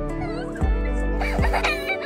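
Background music with deep bass hits a little under a second apart, with a short clucking, chicken-like sound layered in near the middle.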